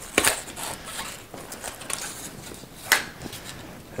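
Rustling and light clicks of paper packaging being pulled off a coiled charging cable by hand, with two sharper snaps, one just after the start and one about three seconds in.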